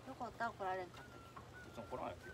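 A woman's brief sing-song voice, followed by a faint thin steady tone.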